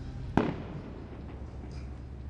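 Steady low hum of outdoor street ambience, with a single sharp pop about a third of a second in.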